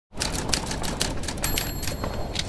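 Typewriter keys clacking in a fast run, with a short bell ding about one and a half seconds in.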